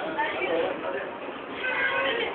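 Indistinct voices of several people talking at once.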